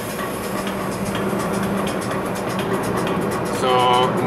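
Steady road and engine noise of a car driving on a highway, heard from inside the cabin, with music playing underneath.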